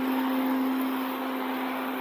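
Steady hiss of rain falling on wet pavement, with a steady low hum underneath.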